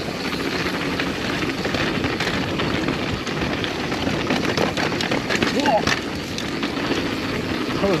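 Mountain bike ridden down a dirt trail: a steady rushing noise of tyres over rough ground, thick with quick rattles and knocks from the chain and frame, and a short pitched sound about six seconds in.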